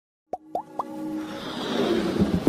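Three quick rising pops in the first second, then a swelling whoosh with held tones building up: synthesized sound effects of an animated logo intro.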